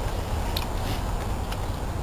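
Steady low rumble of wind buffeting the microphone, with one faint click about half a second in.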